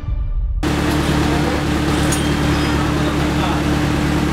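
Theme music cuts off abruptly, then a Honda Jazz hatchback's engine idles steadily with a constant hum while an analyser probe sits in its tailpipe for an exhaust emission test.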